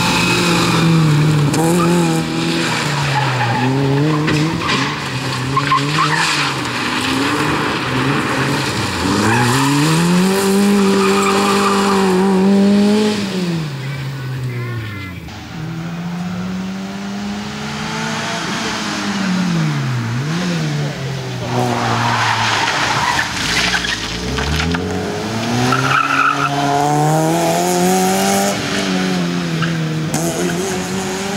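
Fiat Cinquecento rally car engine driven hard, its note climbing and falling back again and again as it accelerates, shifts and lifts off through the turns. The sound is briefly quieter and farther off about halfway through.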